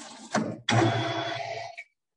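Metal lathe running noise with a steady whine, cutting in and out abruptly as the online call's audio gate opens and shuts, and a cough about a second in.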